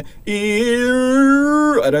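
A man's singing voice holding one sustained vowel for about a second and a half, rising slightly in pitch. It is the way he says not to sing it, with the larynx jammed down.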